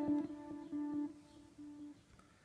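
Korg Gadget's Lexington synthesizer, an ARP Odyssey emulation, playing a gated pad: a held chord chopped into short repeated pulses, dying away toward the end.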